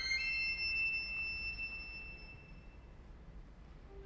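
Solo violin: a fast upward run lands on a very high held note that fades away over about two and a half seconds. A short quiet pause follows, and the violin comes back in at the end with lower notes.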